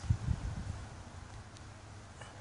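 Gloved hands digging through loose soil and wood chips: a few dull low thumps in the first half second, then faint scuffing.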